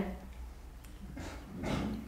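A short pause in a woman's speech: a steady low hum of the room with faint background noise.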